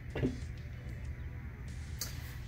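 Quiet room tone: a steady low hum, with one brief short sound about a quarter of a second in.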